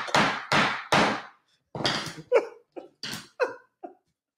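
A hand slapping a desk about four times in quick succession amid hearty laughter, followed by a few shorter, softer bursts of laughing.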